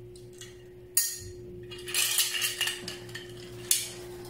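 Metal medals clinking and knocking against one another as they are gathered up off a wooden table. There is a sharp clink about a second in, a short run of clattering after the middle, and another sharp clink near the end.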